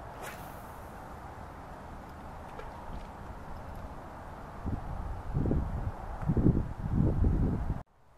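Steady outdoor background with a faint swish near the start as a spinning rod is cast, then, from about halfway, a few seconds of low, irregular rumbling thumps on the microphone, the loudest sound here.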